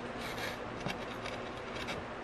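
Faint rustles and a few small clicks from eating and handling food, over a steady low background hiss.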